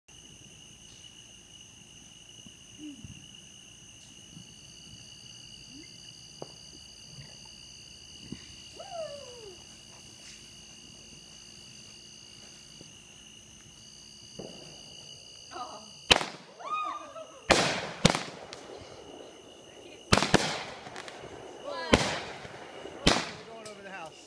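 Consumer aerial fireworks lit on the ground going off: a hiss, then six sharp bangs of bursting shells from about two-thirds of the way in, spaced irregularly a half to two seconds apart.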